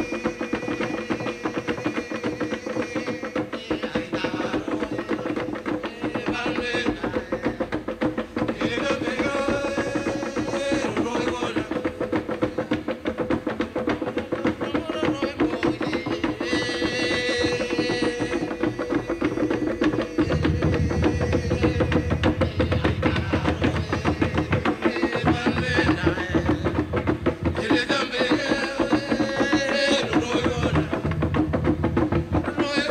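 Tam tam slit-gong drumming: hollow log drums struck in a fast, steady, dense rhythm of wooden strokes. Bursts of voices come in every several seconds, and a deeper drum sound joins about two-thirds of the way through.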